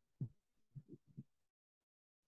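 Near silence, with a few faint, short low sounds in the first second or so.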